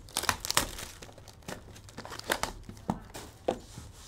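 Plastic shrink wrap being torn and crinkled off a sealed trading-card box: a quick burst of crackling at first, then a few separate crackles.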